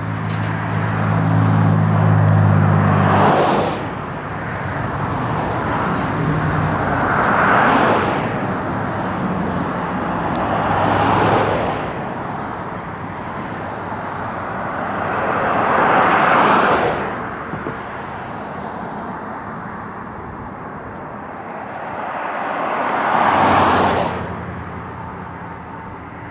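Road traffic passing close by: about five vehicles go past one after another, each a swell of tyre and engine noise that rises and fades. A low engine hum runs under the first few seconds.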